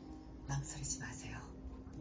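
A person speaking softly in a whisper, over faint background music.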